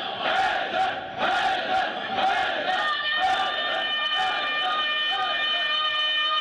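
A congregation of men shouting together in a rhythmic chant, about one shout a second, with raised fists. From about halfway through, the shouts thin out and a steady ringing tone carries on underneath.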